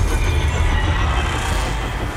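Movie sound effects of a car crash: a continuous, loud rumbling scrape of a vehicle's metal sliding along asphalt, with a deep low rumble underneath.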